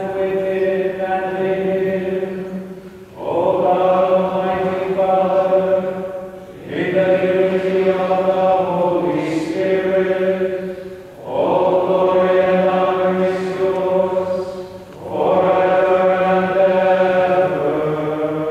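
Liturgical chant sung by several voices in about five long phrases over a steady low organ note. It is sung as the host and chalice are raised at the close of the Eucharistic Prayer.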